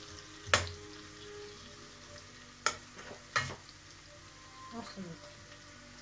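A metal spoon stirring food in a stainless steel pot on a gas burner, knocking sharply against the pot three times: once about half a second in, then twice close together a little before the middle. Between the knocks the food sizzles faintly in the pot.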